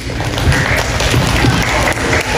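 Audience applauding, a dense patter of many hands clapping.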